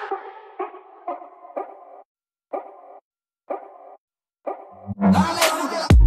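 Breakdown in a house-music DJ mix: a few short pitched hits, about a second apart, with moments of silence between them. Around five seconds in, the full track comes back with heavy bass and a pounding kick drum.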